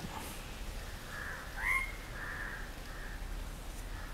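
A bird calling faintly in the background, one short call about a second and a half in, over a low steady hiss and hum.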